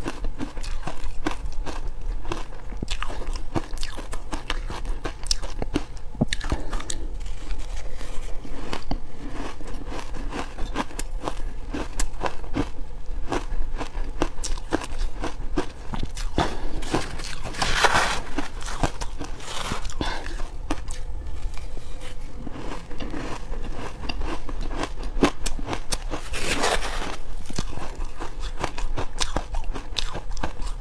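Crumbly purple ice being crunched and chewed close to the microphone, a dense crackle running through, with a spoon scooping it from a plastic tub. Two louder crunching spells come about two-thirds of the way in and near the end.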